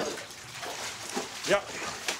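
Water trickling in a small bathroom: a steady, even hiss, with a short spoken "yeah" near the end.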